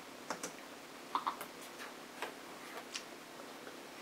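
Faint, irregular clicks of laptop keys being pressed, about seven in all, some in quick pairs.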